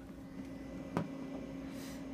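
Macintosh Quadra 650 running, a faint steady hum with one held tone that sounds more like its cooling fan than a spinning SCSI hard drive. A single sharp click about halfway through.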